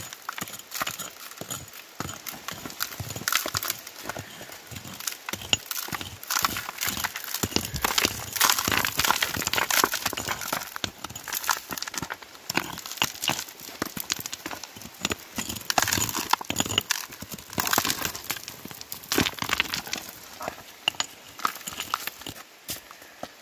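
Rock pick striking and scraping into compact river gravel: a dense, irregular run of knocks and scrapes, with stones and grit rattling loose.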